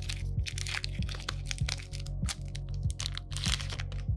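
Foil trading-card booster pack wrapper crinkling and crackling in quick irregular crackles as it is opened and the cards are pulled out, over background music.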